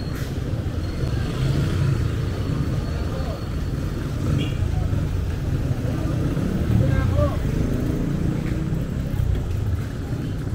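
Street traffic: motorcycle, tricycle and other vehicle engines running and passing close by as a steady low rumble, with people's voices mixed in.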